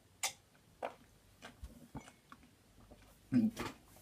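Quiet gulps and clicks of someone drinking milk from a mug: two sharper clicks in the first second, then a few softer ones. Near the end there is a short strained vocal groan.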